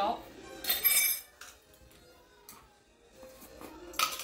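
A metal measuring spoon clinks and rings against a glass mixing bowl about a second in, as garlic salt is tipped into it. Faint clicks of spice bottles being handled follow.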